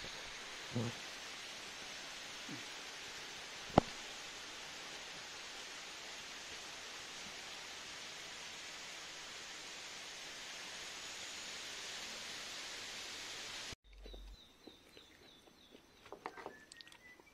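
Steady outdoor background hiss, with one sharp click about four seconds in. It cuts off abruptly near the end, leaving a quieter indoor sound with a faint high tone.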